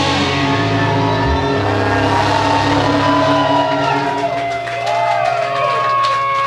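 Four-piece rock band playing live, with guitar, bass, synth and drums: held notes that slide and bend in pitch over a steady bass note. Recorded on a Wollensak 3M 1520 reel-to-reel tape recorder.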